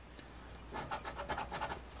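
A round scratcher token scraping the latex coating off a lottery scratch-off ticket in quick strokes. It is faint at first and turns into a busier run of rapid scrapes from about two-thirds of a second in.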